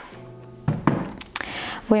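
Cork yoga block being handled and set down, making a few knocks.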